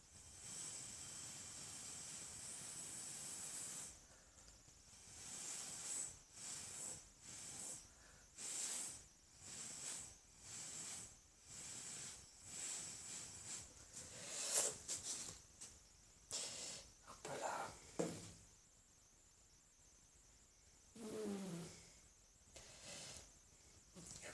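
Breath blown through a drinking straw across wet acrylic paint: one long steady airy hiss, then a string of short puffs, about two a second, that stop a few seconds before the end.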